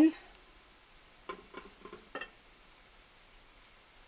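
Quiet room tone with a few faint, brief spoken syllables about a second and a half in.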